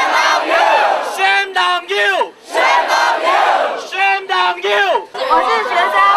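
A man shouts a short three-syllable slogan three times, and after each time a crowd of protesters shouts back in a loud mass of voices: a call-and-response protest chant.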